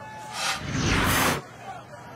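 Broadcast transition whoosh: a short rush of hiss that swells for about a second and cuts off, marking the switch from replay to live play.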